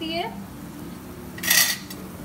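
A metal spatula scrapes and clinks once against the frying pan about one and a half seconds in, a short harsh scrape with a metallic ring, as it is worked under a slice of French toast.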